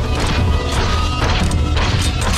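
Monster-movie soundtrack: music under a heavy low rumble, with several crashing impacts.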